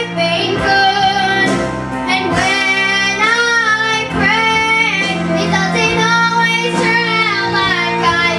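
A young girl singing a slow ballad into a handheld microphone over instrumental backing music, her voice holding and bending long notes.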